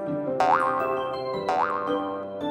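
Cheerful children's background music with two cartoon "boing" sound effects, about a second apart, each springing up in pitch and then wobbling.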